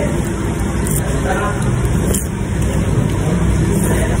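Steady low rumble of background noise with faint voices underneath, with no distinct events.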